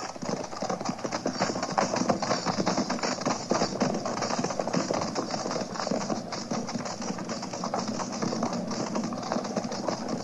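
Hoofbeats of a troop of horses, a dense, irregular clatter of many hooves as a mounted cavalry patrol rides off. It is a radio-drama sound effect.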